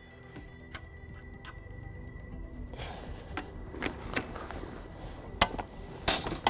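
Scattered light clicks and knocks from the steel frame of a JRC Contact Barrow fishing barrow being folded up by hand, over quiet background music.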